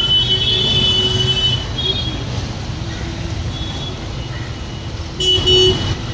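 Road traffic runs steadily, with a vehicle horn sounding for about a second and a half at the start and a short, louder toot near the end.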